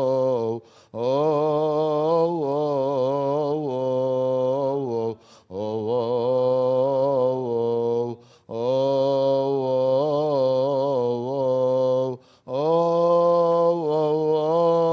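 A male voice chanting a Coptic liturgical hymn in long, ornamented phrases, the pitch wavering over each held vowel. Brief pauses for breath come about half a second, five, eight and twelve seconds in.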